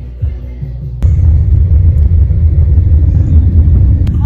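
Soft background music, then about a second in a sudden cut to the loud, steady low rumble of a car driving, heard from inside the moving vehicle.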